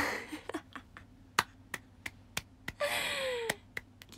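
A woman's breathy laugh at the start, then a series of sharp, irregular clicks. Near the end comes a breathy vocal sound that falls in pitch.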